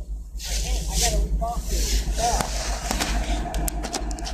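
Brief, indistinct voices with rustling handling noise, over a steady low rumble.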